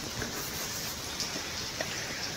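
Steady rain falling: an even hiss.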